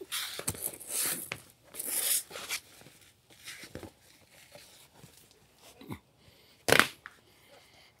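A heat-softened deck board being twisted and pulled into a knot by gloved hands, giving irregular rasping scrapes and rubs as the board slides over itself and the floor, the loudest near the end.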